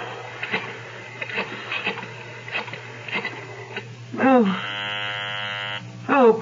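Telephone sound effects from a radio drama: a few light clicks, a brief voice about four seconds in, then a buzzing telephone ring tone for about a second and a half that cuts off suddenly as an unanswered call goes through.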